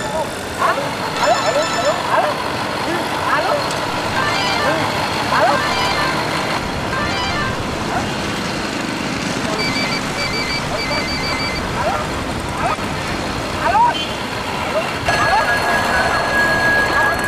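Street noise with road traffic and voices, and an electronic phone ringtone trilling in short pulsed bursts a couple of times.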